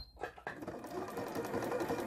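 Domestic electric sewing machine stitching an overcast edge finish along the raw edge of fabric to keep it from fraying. After a click at the start, it runs steadily from about half a second in.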